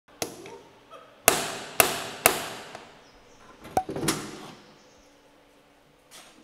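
Metal ring door knocker on a front door: a light tap, then three loud knocks about half a second apart, each ringing out. A sharp click and a short rattle about four seconds in.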